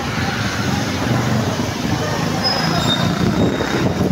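Steady city traffic and street noise, with voices in the background and a couple of faint, brief high tones after the middle.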